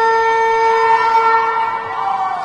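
Ice rink horn sounding one long, steady, loud blast that cuts in suddenly and stops near the end.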